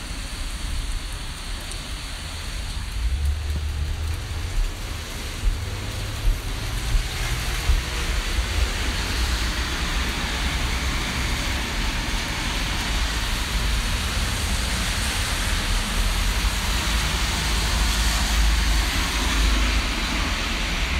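Heavy rain pouring down, a steady hiss of rain falling on wet surfaces, with a low rumble underneath and a few louder taps between about five and eight seconds in.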